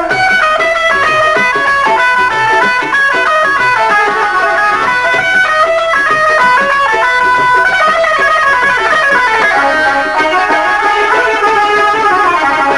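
Instrumental break in live Punjabi folk music: a plucked string instrument plays a fast melodic run of quickly stepping notes, with no singing.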